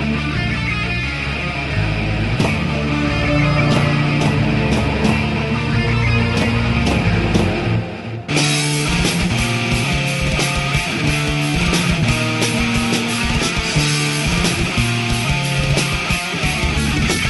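Heavy metal band recording playing an instrumental passage: guitars and bass hold sustained low notes with scattered cymbal hits. After a brief break about halfway through, the full drum kit comes in with fast, dense playing under the guitars.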